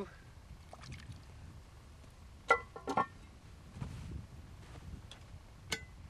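Cast-iron Dutch oven lid being set on a pot full of water: sharp metal clanks with a short ring, the loudest about two and a half seconds in, another half a second later, and a lighter one near the end.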